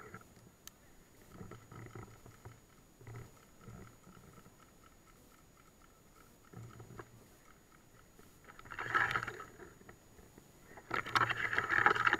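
Rustling and swishing of bracken and brush against the body as someone pushes through dense undergrowth, faint and crackly at first, with two louder bursts late on.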